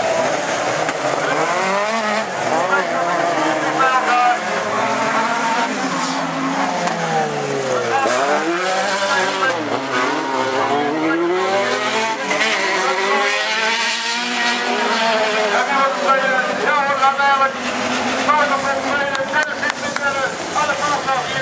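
Several dirt-track autocross race cars running together, their engines revving up and down as they brake and accelerate around the track, with a deep dip and climb in engine pitch about eight seconds in.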